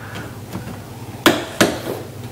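Two sharp clicks about a third of a second apart, from wall light switches being flipped on, over a steady low hum.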